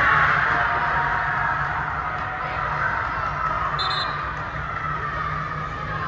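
Steady low hum and reverberant background noise inside an inflated sports dome, with one short, high whistle blast about four seconds in.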